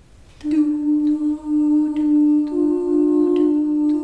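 Female vocal quartet beginning a song, the voices entering about half a second in on long, steady held notes in close harmony; a second, higher note joins about two and a half seconds in.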